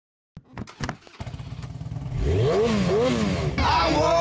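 A few sharp pops, then a motorcycle engine running and revved several times, its pitch climbing and falling with each blip of the throttle.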